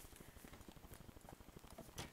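Near silence, with faint rapid low ticking throughout.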